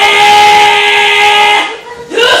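A long, loud held yell from a wrestler, rising in pitch at first, then held steady and fading out near the end.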